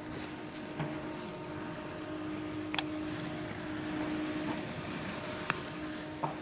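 A steady low machine hum over a faint outdoor noise bed, with two short sharp clicks.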